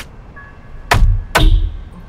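Two loud, deep thuds about half a second apart, with faint musical tones around them.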